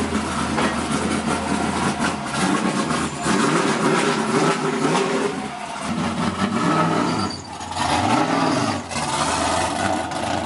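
BMW E46 drift car's engine running as the car rolls slowly past, with the pitch rising and falling in short throttle blips, most clearly in the second half.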